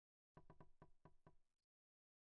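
A quick run of about six faint taps or knocks, roughly four to five a second, starting and stopping abruptly about a third of a second in and a second and a half in.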